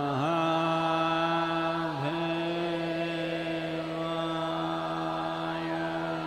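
A man's voice chanting a mantra on one long, steady held note, with a brief dip in pitch about two seconds in.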